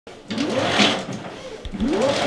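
Roller shutter being hauled up by its strap, the winding mechanism whirring up and down in pitch with each pull; two pulls, the second starting near the end.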